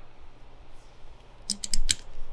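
Small metal parts handled on an aluminium kart carburetor: a quiet pause, then a quick run of about five small sharp clicks near the end as a screw is fitted to button up the float bowl cap.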